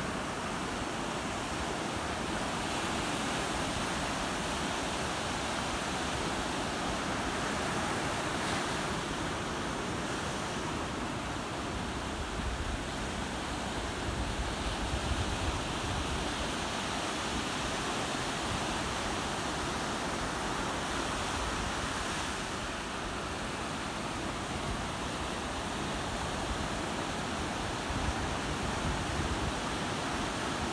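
Ocean surf: small waves breaking and washing up a sandy beach in a steady rushing hiss, swelling a little now and then.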